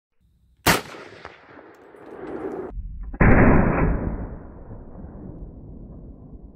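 A single .30-06 M1 Garand rifle shot, a sharp crack with a ringing tail. About three seconds in comes a deeper, muffled boom with no high end that fades out slowly over a couple of seconds, which fits the same shot played back slowed down.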